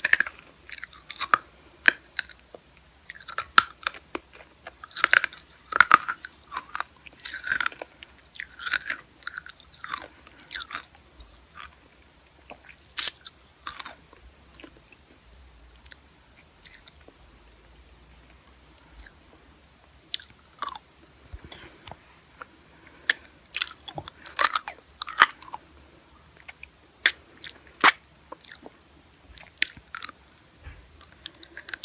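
Close-miked wet mouth sounds of a lollipop being sucked and eaten: short smacks and clicks in clusters, with a quieter stretch in the middle.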